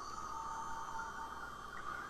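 Craft heat tool running steadily on its low setting, a constant whining hum of its fan and heater blowing on the card.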